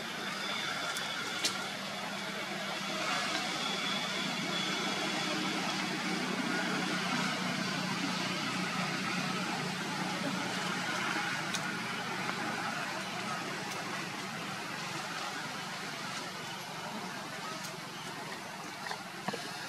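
Steady outdoor background noise with a low hum and a few faint clicks.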